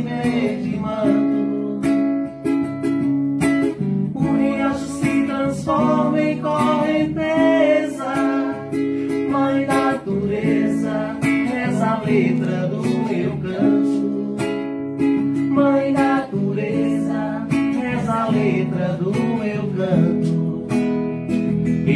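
A live song: an acoustic guitar strummed in a steady rhythm while a man sings into a microphone.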